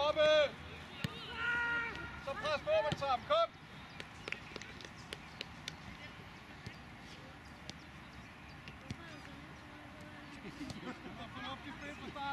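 Shouted calls from voices on a football pitch, loud and drawn-out for the first three seconds or so, then a quieter stretch with scattered short knocks and faint distant calls, with voices rising again near the end.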